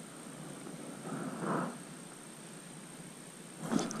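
Faint steady outdoor background hiss with a thin high steady whine, and one soft, brief swell of noise about a second and a half in.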